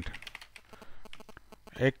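Computer keyboard keys clicking in a quick run of keystrokes as a file path is typed. A voice starts speaking just before the end.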